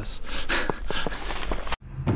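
A person's sharp breaths or gasps, with a few short scuffs, cut off abruptly near the end.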